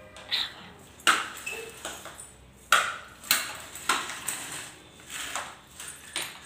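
A baby walker knocking and clattering as it is pushed about on a concrete floor: several sharp knocks, some followed by a short metallic ring.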